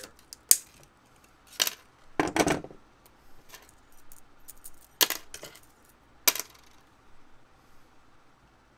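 Metal finger rings and twisted steel wire of a survival wire saw being handled on a desk: sharp metallic clinks, like coins dropping, about five times at irregular intervals, with a quick cluster of them between two and three seconds in and quieter ticking between.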